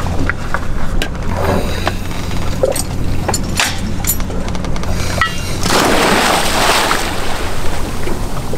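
A scuba diver in full gear goes off the side of a boat into the water: a loud splash about six seconds in that lasts about a second. Before it come a few short knocks of gear against the boat, and a steady low hum runs underneath throughout.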